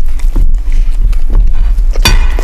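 Two huskies eating pizza close to a microphone: steady snuffling and licking with a few sharp crunches of crust about a second apart.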